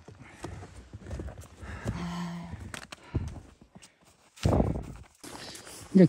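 Footsteps crunching in snow on a mountain trail, an uneven step every half second or so, with a louder thump about four and a half seconds in.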